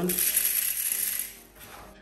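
Sun-dried African breadfruit (ukwa) seeds pouring from a hand into a plastic bowl of seeds: a dry rattling patter that fades out about a second and a half in. The crisp rattle is the sign of seeds fully sun-dried.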